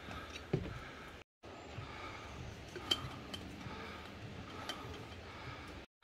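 Light metallic clinks and taps from a stainless-steel tumbler and its cap being handled, the sharpest clink coming about three seconds in, over a steady background hiss. The sound drops out briefly twice.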